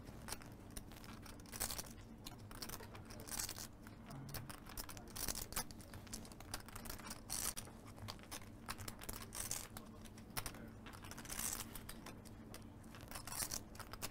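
Poker chips clicking together as a player riffles a small stack in his fingers, in short bursts of clacks every second or two.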